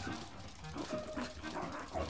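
Pet foxes giving short whines and yips while they play, in scattered brief calls.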